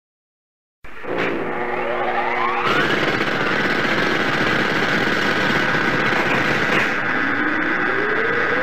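Electronic logo sound effect: after a moment of silence, a dense, rough noise comes in with a tone sweeping upward, then holds steady with a high tone over it, and a second upward sweep begins near the end.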